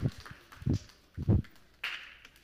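Footsteps of children walking out: two dull thuds a little over half a second apart, then a brief hiss near the end.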